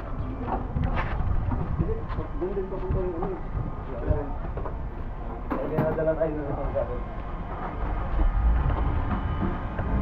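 Wind noise on a handheld camera's microphone while walking, heavier in the last couple of seconds, with voices talking briefly twice.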